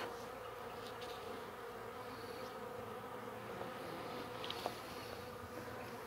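Steady hum of a small swarm of honey bees clustered on the ground in the grass.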